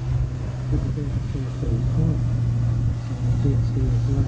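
Steady low drone of a river paddle boat's engine running under way, with a person's voice speaking quietly over it in short patches.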